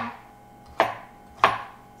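Chef's knife dicing cucumber on a cutting board: three sharp chops, each under a second apart.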